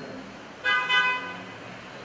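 A single short honk of a vehicle horn, a steady pitched blast lasting a little over half a second, about half a second in.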